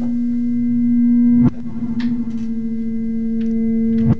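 A steady low synthesized drone with a faint higher overtone, a suspense music bed. It swells until a sharp click-like break about a second and a half in, then carries on.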